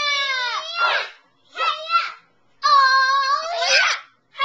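A child's high-pitched voice making drawn-out squealing, crying wails: one long wail that falls away about a second in, a short cry, then another long held wail near the end.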